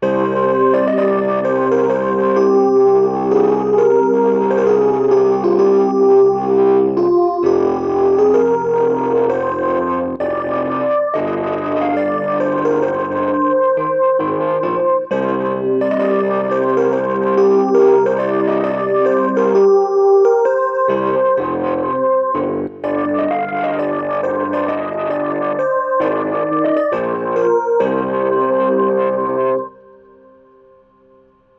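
Electronic keyboard synthesizer on its 'fantasy' voice, played with both hands: held chords low under a slow melody above, with short breaks between phrases, stopping abruptly near the end. Heard through a computer's built-in microphone.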